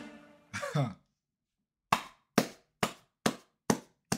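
The song's last sound dies away, a man gives a short vocal exclamation, then he claps his hands five times in an even rhythm, about two claps a second.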